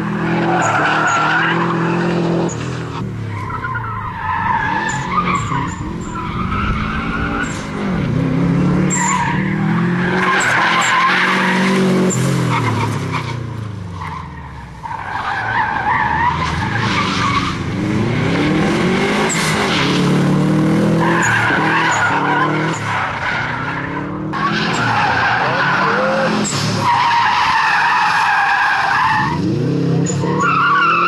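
Subaru Impreza GT's turbocharged flat-four engine revving hard, its pitch rising and falling over and over through gear changes and lifts. The tyres squeal and scrabble in repeated bursts as the car slides sideways through tight corners on dusty tarmac.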